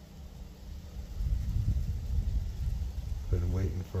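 Wind buffeting the microphone: a low, uneven rumble that starts about a second in and holds.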